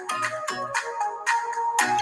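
A short electronic musical jingle: a few held notes changing pitch over a low, pulsing bass, lasting about two seconds.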